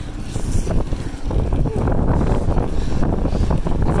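Wind rushing and buffeting over the microphone of a handheld camera on a mountain bike descending fast, with the rumble of the tyres on a rough asphalt path. The noise grows louder about a second in as the speed builds.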